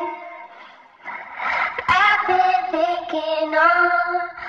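A looped sung vocal played through a Leslie-style rotary speaker effect: held notes that fade out in the first second, then the singing comes back in on a breathy onset and steps through a short phrase.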